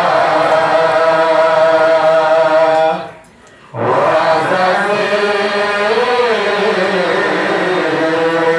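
A solo voice chanting in long, ornamented held notes, in the manner of an Islamic qaswida or recitation. It breaks off briefly for breath about three seconds in, then starts a new phrase that wavers up and down in pitch.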